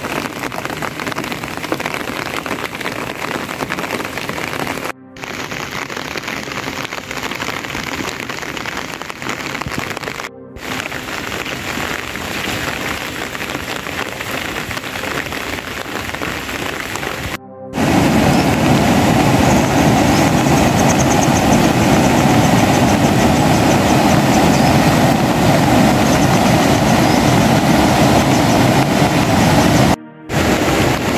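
Steady rain falling, in several short shots joined by brief dropouts. About two-thirds of the way through, a louder, steady rush of water from a rain-swollen river in flood takes over.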